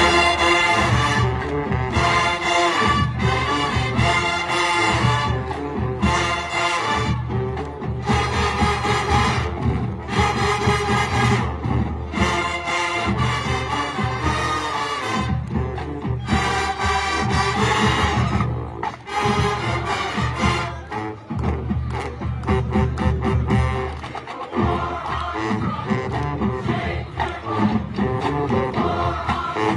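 Marching band of brass and drums playing loudly in repeated punchy chords over a steady bass beat.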